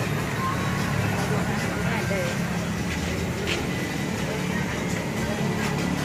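Steady low rumble of road vehicle engines, with faint voices and music in the background.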